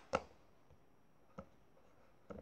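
Two brief clicks in a quiet room, a sharper one just after the start and a softer one about a second and a half in: small taps of fingers handling little wooden miniature pieces on a wooden tabletop.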